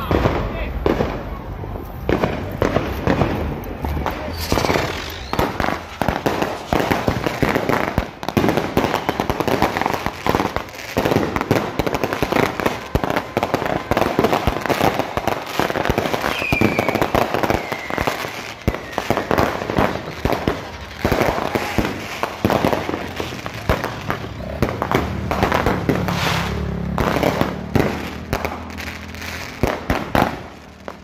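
Consumer firework cakes going off on a street: a dense, rapid run of bangs and crackling, with a short falling whistle about halfway through.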